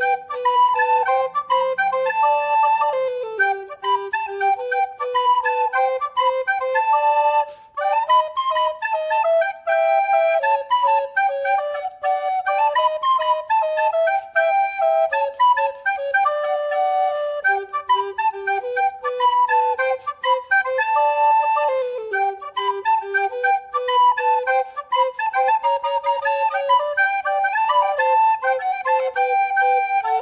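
Background music with a flute-like lead melody over a steady beat.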